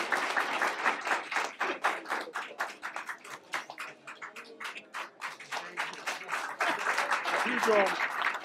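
Audience applauding, with hand claps that are dense at first, thin to scattered claps in the middle and pick up again near the end, when a few voices come in.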